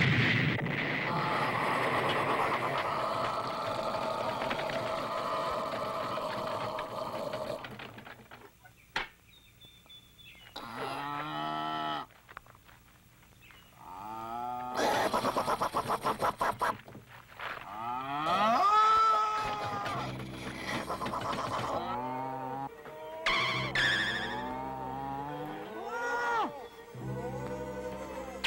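Cartoon soundtrack: a sudden loud bang from the tank's gun right at the start, followed by about eight seconds of dense, steady noise. After a quieter gap come music and cartoon sound effects whose pitch slides up and down, with a quick run of rapid pulses partway through.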